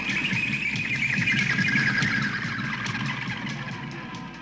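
Closing trailer music: a held high tone that slides slowly lower over a busy low layer, beginning to fade out in the second half.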